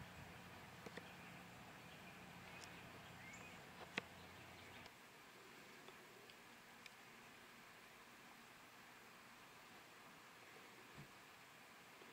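Near silence: faint background ambience with a low hum and a few light clicks, the sharpest about four seconds in. The hum drops away about five seconds in, leaving quieter room tone.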